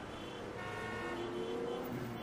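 City street traffic ambience, with a car horn sounding for about a second and a half over the steady hum of traffic.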